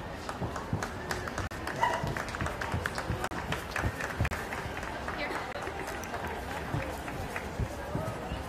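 Footsteps of a handler trotting on a carpeted show-ring floor, dull thumps about three a second, over the murmur of crowd chatter.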